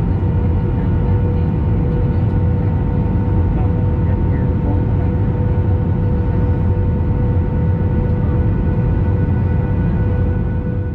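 Airliner cabin noise on final approach: a steady low rumble of engines and airflow with a constant tone running through it, rising a little in level at the start.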